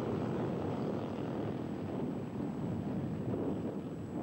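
Rally motorcycle engines droning steadily in the distance.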